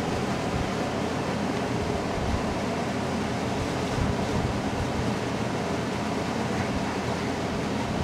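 Window air conditioner running: a steady, even noise that holds at one level throughout.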